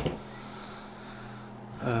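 A quiet room with a faint, steady low hum, with no other event between the words.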